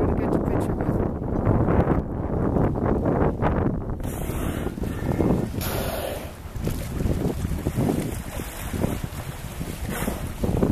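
Wind buffeting the microphone, with water splashing and hissing from about four seconds in as killer whales surface close to the dock. A brief louder rush comes about six seconds in.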